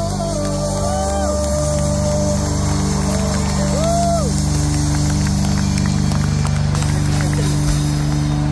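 Live rock band holding a sustained chord, with a few short arching glides in pitch over it in the first half.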